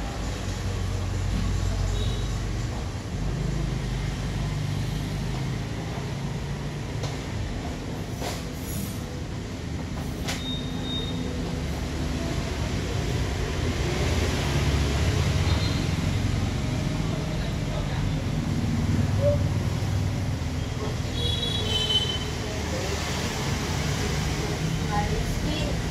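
Low rumble of passing road traffic, rising and falling, loudest a little past the middle.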